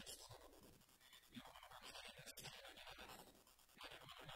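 Near silence: faint room tone with a light, scratchy hiss.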